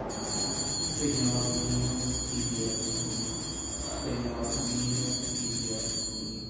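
Altar bells (sanctus bells) being rung continuously, with a short break about four seconds in, to mark the elevation of the host at the consecration. Soft music plays underneath.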